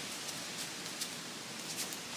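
Soft rustling and shuffling of gi cloth and bare feet moving on foam mats, over a steady room hiss, with a few faint light ticks.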